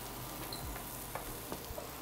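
Chopped shallots sautéing in olive oil in two frying pans, a steady sizzle, with a few faint taps and scrapes of spatulas as they are stirred.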